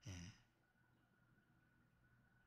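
Near silence: room tone, after a brief faint vocal sound from the man right at the start.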